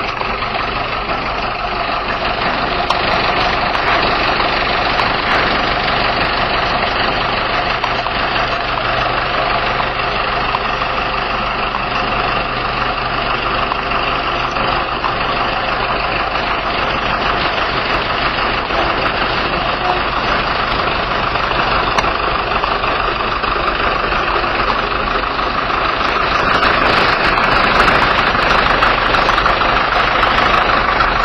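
Heavy FAW truck's diesel engine idling steadily, growing a little louder in the last few seconds.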